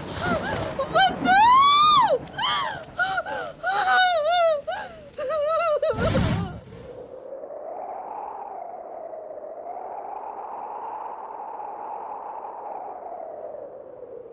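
Film background score: a wordless vocal line sweeping up and down in long melismatic glides, broken by a short noisy burst about six seconds in, then a soft, sustained hummed tone that slowly wavers in pitch.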